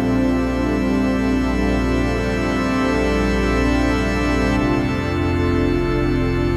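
Background music of slow, sustained keyboard chords, with the bass notes shifting about four and a half seconds in.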